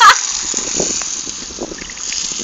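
Garden hose spraying water in a steady hiss, the stream splattering on the wet dirt ground. A brief loud voice cuts in at the very start.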